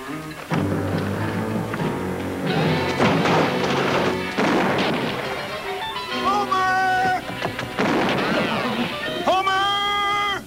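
Background music from a TV western's score, continuous and loud, under an action scene.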